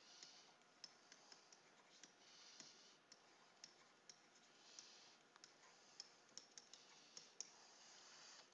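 Very faint tapping and light scratching of a stylus on a tablet screen during handwriting: irregular small clicks, roughly two or three a second, with short soft scratchy strokes between them.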